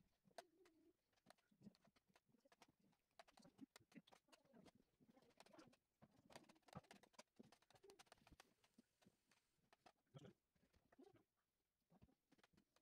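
Faint creaks and scrapes of a kitchen knife cutting through a pumpkin's shell, with many small clicks and scrapes of a spoon on a plate of pumpkin pieces.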